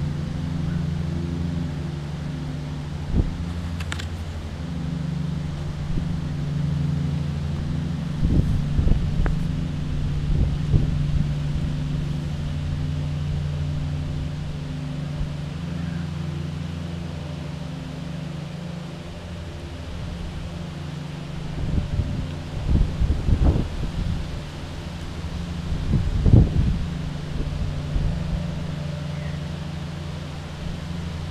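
A motor running steadily with a low, even hum. Wind bumps on the microphone a few times, about a third of the way in and again near the end.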